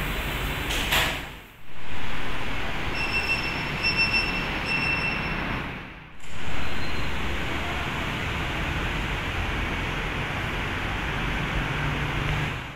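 Steady room air-conditioning noise in a large ward, with three short high electronic beeps a little under a second apart near the middle. The sound fades out and back in twice.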